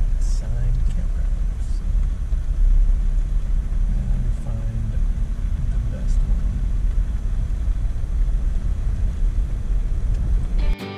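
Low, steady rumble inside a Jeep driving slowly on a gravel dirt road: engine and tyre noise heard from the cabin. Faint voices come through briefly near the start and about midway.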